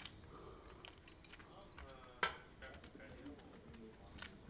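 Soft, scattered clicks of poker chips being handled and fiddled with at the table, with one sharper click a little over two seconds in.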